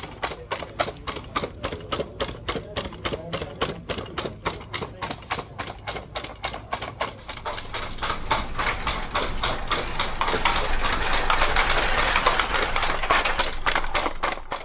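ARTEMIS humanoid robot walking: fast, regular clicks of its steps and joints, about four a second. A noisy hiss grows louder from about eight seconds in.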